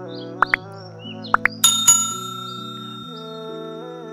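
Calm background music of slow held chords, over which a subscribe-reminder animation's sound effects play: two pairs of quick clicks about a second apart, then a bell ding that rings on and fades.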